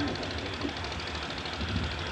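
Steady background hum with an even hiss: low room noise with no distinct event.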